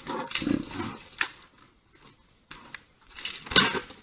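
Bear vocalizing in short, breathy bursts: several in the first second or so, a lull around two seconds in, then louder ones near the end.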